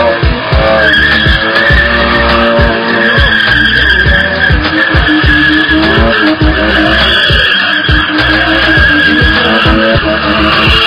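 Car engine revving hard with its tyres squealing continuously as it spins donuts in a burnout. Music with a steady bass beat plays over it.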